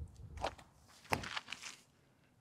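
A few footsteps of shoes on a paved path as a disc golfer takes his run-up into a throw.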